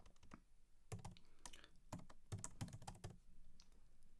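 Computer keyboard typing, faint: quick runs of keystrokes with short gaps between them.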